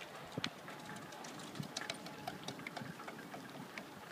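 Faint sandstorm wind, a steady hiss with scattered small ticks and clicks throughout.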